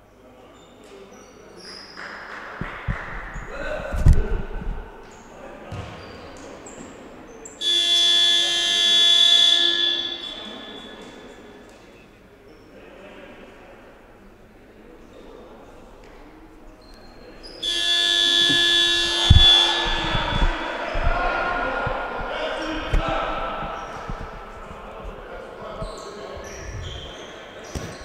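Gym game buzzer sounding twice, each a loud, steady blare of about two and a half seconds. The first comes about eight seconds in and the second about ten seconds later, marking the end of a timeout. Before the buzzer, basketballs bounce on the hardwood court with hall echo.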